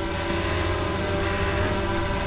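DJI Mavic 2 Zoom quadcopter hovering in the air, its propellers giving a steady, even buzzing whine made of several held tones.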